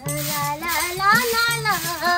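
A high-pitched voice singing a melody, with sliding and briefly held notes, along with music.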